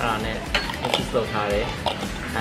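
Voices and background music, with three sharp clinks of bar tools being handled: about half a second in, at one second, and near the end.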